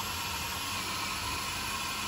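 Hilti SFC 22-A and DeWalt DCD999 cordless drills running under load, boring 22 mm auger bits into a wooden log: a steady, even noise that does not change.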